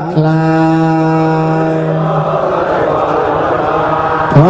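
A male voice chanting Buddhist recitation, holding one long steady note that breaks off a little past halfway, followed by a breathy hiss until the next phrase.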